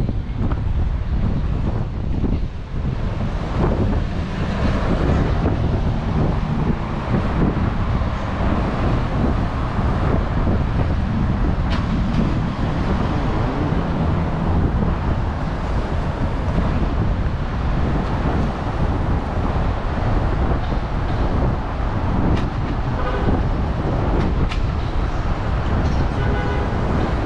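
Downtown street traffic: cars driving through an intersection, a steady rumble of engines and tyres.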